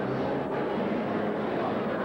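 Steady background din of a crowded indoor exhibition hall, an even wash of noise with a faint low hum and no single sound standing out.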